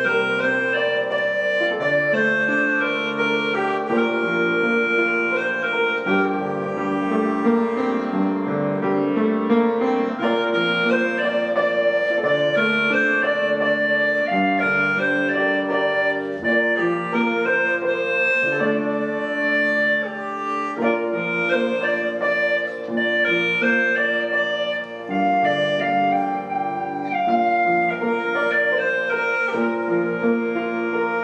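Hulusi (Chinese gourd flute) playing a smooth, reedy melody. Underneath it runs an accompaniment of sustained chords that change every couple of seconds.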